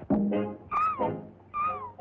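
Cartoon orchestral soundtrack with two short meow-like calls that rise and fall in pitch, one a little under a second in and one near the end.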